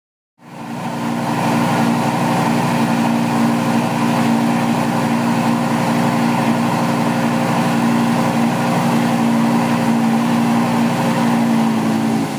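Car engine running loudly at a steady, held speed. It starts suddenly and keeps an even tone throughout.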